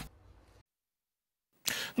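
Near silence: the sound drops out completely for about a second, then a brief soft noise comes in near the end, just before speech resumes.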